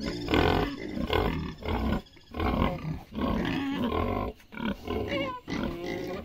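Pigs grunting and calling in a string of short, irregular bursts, begging for food at feeding time.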